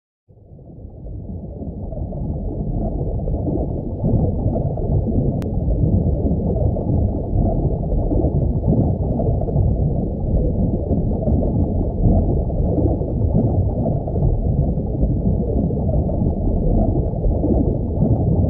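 Underwater ambience sound effect: a loud, muffled rush and rumble of water, all low in pitch, fading in over the first couple of seconds and then holding steady.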